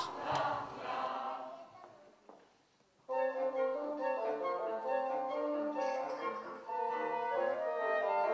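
A small live acoustic ensemble playing, with wind instruments holding sustained notes. The music comes in suddenly about three seconds in, after a short fading tail and a moment of near silence.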